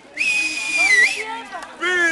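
A loud, high-pitched whistle held for about a second on one steady note, dipping and rising again just before it cuts off.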